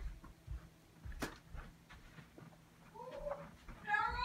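Scattered soft thumps and knocks of a small pet scampering about on the floor, with one sharp click about a second in. Near the end comes a short, rising animal call.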